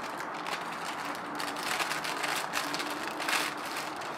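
Crinkling and rustling of a shiny plastic snack wrapper being handled and opened, in short irregular crackles over a faint steady hum.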